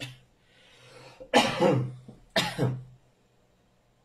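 Two short, loud coughs about a second apart, with a breath drawn just before the first.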